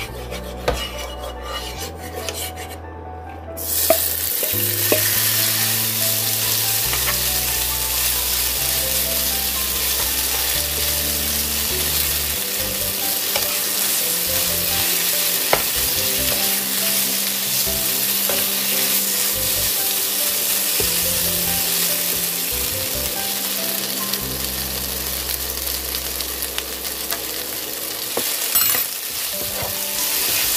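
Thin-sliced pork belly in gochujang marinade going into hot oil in a nonstick frying pan, sizzling steadily from about four seconds in while it is stir-fried with a wooden spatula. Background music plays underneath.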